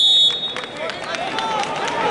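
A high electronic scoreboard buzzer marking the end of the wrestling period cuts off about a third of a second in. It gives way to arena crowd noise with scattered clapping and voices.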